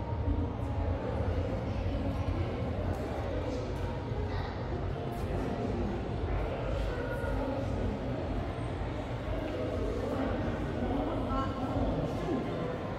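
Indistinct chatter of visitors in a large indoor hall, over a steady low rumble.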